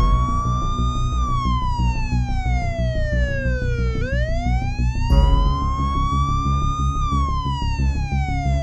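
Police siren wailing in slow sweeps: it peaks about a second in, falls to its lowest about four seconds in, then climbs to another peak about seven seconds in. A steady-beat music track runs beneath it.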